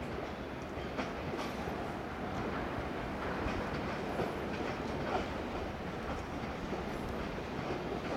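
Old-type passenger coaches rolling slowly over the rails and points on arrival: a steady rumble of steel wheels with a few scattered clacks.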